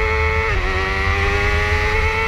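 BMW S1000RR superbike's inline-four engine at full throttle, heard onboard: it shifts up about half a second in, the pitch dipping, then climbs steadily again, with wind rumble on the microphone underneath.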